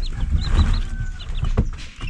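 Short, high chirping bird calls repeated in quick succession, over a low rumbling noise, with a single sharp knock about one and a half seconds in.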